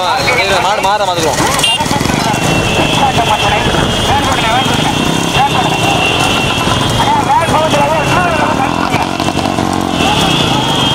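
Loud, continuous shouted race commentary from a voice over steady vehicle running noise, with a steady high-pitched tone joining about two and a half seconds in.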